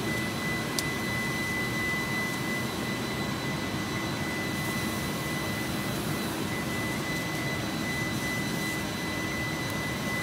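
Steady whir of running machinery with a constant thin high whine, and one faint click about a second in.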